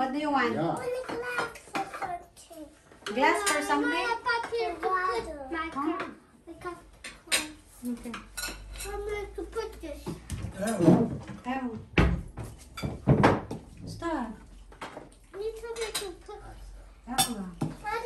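Cutlery and serving utensils clinking and scraping against plates and bowls as food is dished out at a table, in many short scattered clicks, with voices of adults and children talking throughout.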